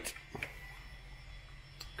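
A pause with a low steady hum in the background and a couple of faint clicks, one shortly after the start and one near the end.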